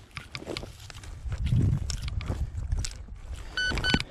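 Hand digging in stubble-covered soil: clicks and scrapes of the digging tool's blade and crunching straw over a low rumble. Near the end comes a quick run of short, evenly spaced electronic beeps from the metal detecting gear as it picks up the target.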